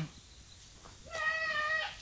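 About a second of near silence, then a single high-pitched call held on one steady pitch for under a second.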